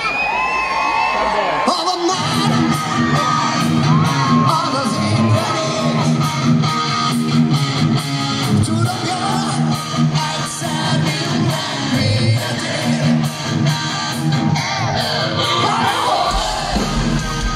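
Live rock band playing loud, with a male lead vocal over electric guitar, drums and keyboards. The full band with drums comes in about two seconds in.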